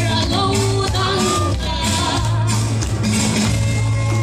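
A woman singing a Mizo song into a microphone over amplified music, with a steady low bass note and light percussion.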